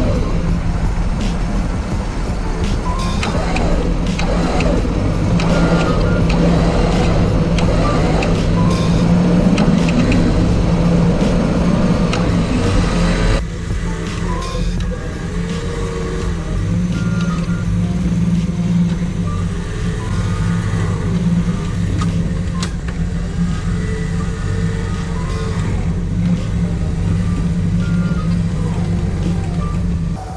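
Background music over the steady running of a Jeep YJ and its Badland Apex 12,000 lb electric winch as the winch pulls the Jeep forward on its line toward a tree. The sound drops and changes abruptly about 13 seconds in.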